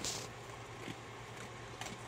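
Handling noise from the phone being repositioned: a short brushing rustle at the start and a couple of faint knocks, over a steady low hum.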